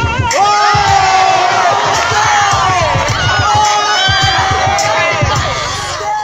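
Crowd cheering and shouting loudly, many voices at once, with a music beat playing underneath.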